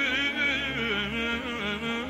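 Saxophone playing an ornamented folk melody with quick wavering turns, over a steady amplified backing with a low bass line.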